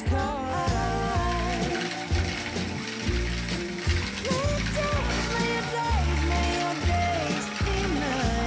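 Motorised toy train running along plastic track, its small gears clicking and whirring, over background music with singing and a heavy bass beat.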